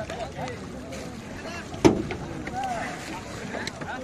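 Men's voices calling and talking over the water, with a steady wash of water and wind noise. One sharp knock or slap, the loudest sound, comes a little under two seconds in.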